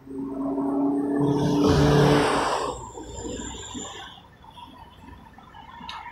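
Road traffic: a vehicle passes close by with a rising and falling rush of engine and tyre noise that peaks about two seconds in, over a steady hum. Quieter traffic follows.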